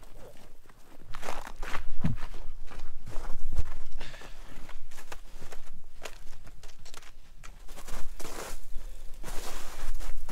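Footsteps on packed snow and ice, about two steps a second.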